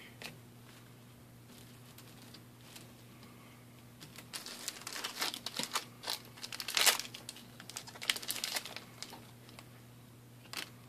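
Foil booster-pack wrapper being torn open and crinkled: a dense run of crackling from about four seconds in until about nine seconds, loudest near seven seconds.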